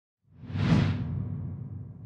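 A whoosh sound effect that swells in about a quarter second in, peaks quickly and fades away over the next second, with a low sustained tone beneath it.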